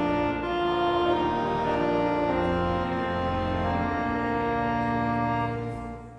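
Church organ accompanying a congregation and choir singing a hymn in slow, held chords. It fades into a brief break right at the end, between verses.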